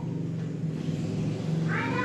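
A short rising, meow-like call begins near the end, over a steady low hum.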